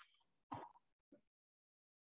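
Near silence on video-call audio, broken by one short, soft sound about half a second in and a tiny click just after one second.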